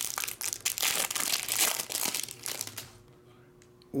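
Clear plastic wrap being peeled and pulled off a pack of trading cards: a dense run of crinkles for about three seconds, then it stops.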